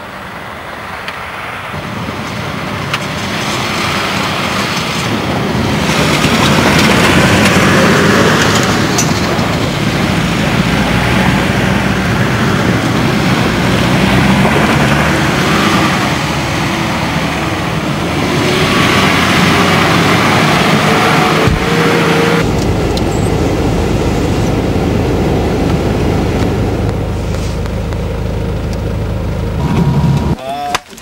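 Several off-road 4x4s driving past one after another on a dirt track: engines running and tyre noise on the loose surface, swelling as each vehicle passes. About two-thirds of the way through, the sound changes abruptly to a steadier, lower engine hum.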